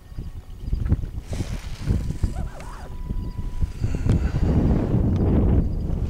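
Wind buffeting the microphone on open water, an uneven low rumble that grows stronger in the second half.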